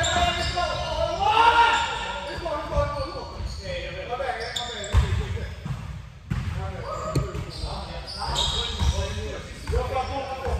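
Basketball bouncing on a hardwood gym floor with sneakers moving and players' voices calling out, all echoing in a large gym. One thump about halfway through is the loudest sound.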